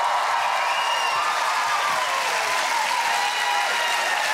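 Studio audience applauding in a steady wash, with a few scattered cheers.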